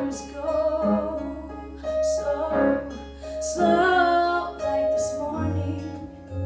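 A woman singing a contemporary musical-theatre song live, with instrumental accompaniment.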